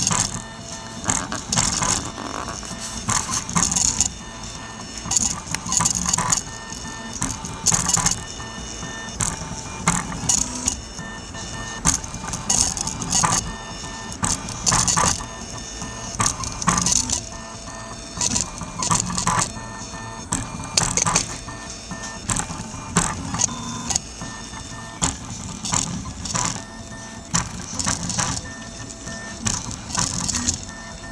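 Prusa Mendel 3D printer's stepper motors running through a print: a string of shifting whines and buzzes, with louder bursts every second or so as the print head moves back and forth.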